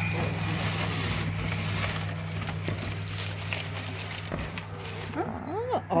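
Crumpled packing paper rustling and crinkling as hands dig through it in a cardboard box with divider cells, over a steady low hum. The rustling stops about five seconds in.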